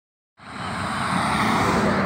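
Steady rushing background noise with a faint low hum underneath, starting about half a second in.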